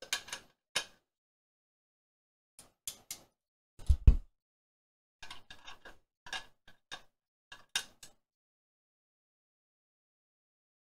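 Small clicks and taps of needle-nose pliers on a screw and nut as the screw is worked into a plastic project box, in irregular groups, with one heavy thump about four seconds in. A quick run of clicks follows, then it stops about two seconds before the end.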